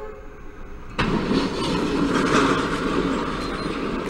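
A train striking a car stopped on a level crossing: a sudden loud crash about a second in, followed by a continuous loud rushing noise of the train and wreckage.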